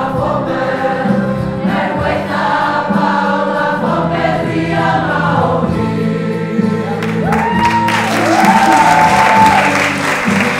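A group of voices singing a song together in unison. About seven seconds in, the singing breaks into cheering and clapping, with whoops.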